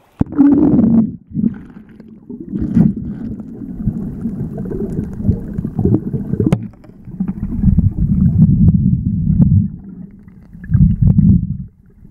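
A microphone plunging underwater just after the start, then loud, muffled low water rumble and sloshing that swells and fades, with a few sharp clicks.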